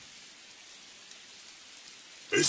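Faint, steady rain falling.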